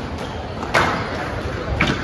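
Squash ball being hit during a rally: two sharp cracks about a second apart, each followed by a short echo.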